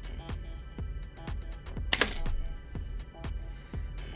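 Wire cutters snipping through the wire frame once, about two seconds in: a single short, sharp snap, heard over background music with a steady beat.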